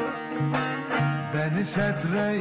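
Turkish folk music (türkü) played live on bağlama (long-necked saz), with plucked notes struck about every half second over sustained lower tones.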